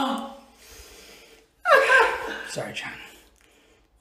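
A man's voice crying out and gasping: a falling cry, a quiet breathy pause, then a sudden loud falling cry about one and a half seconds in and a shorter one after it, with the name "John" spoken.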